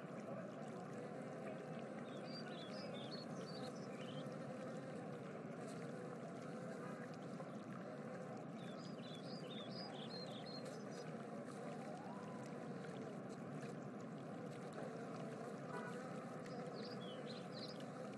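Steady, quiet rushing noise like running water, with three short clusters of high chirps spaced several seconds apart.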